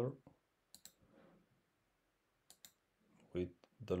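Computer mouse clicking twice, about two seconds apart, each a quick double tick of press and release, as points are set in a drawing program.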